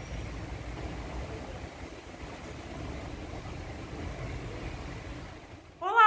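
Steady outdoor ambience: a low rumble with a faint hiss and no distinct events, cut off near the end.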